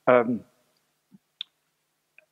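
A man's short hesitant "euh" at the start, then quiet broken by two small, faint clicks a little past a second in.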